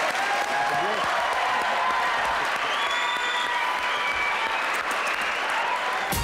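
Studio audience applauding steadily, with a few voices calling out over the clapping.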